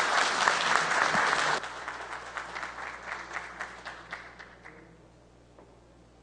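Audience applauding: dense clapping for about a second and a half, then dropping off sharply to scattered claps that die away near the end.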